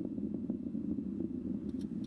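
Distant, steady low rumble of a Falcon 9's first-stage rocket engines, nine Merlin engines heard from the ground as the rocket climbs, with faint crackling in it.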